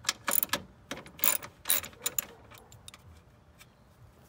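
Small ratchet with a 10 mm socket undoing bolts on a car's radiator support: irregular sharp metallic clicks and clinks for about the first two seconds, then only a few faint ticks.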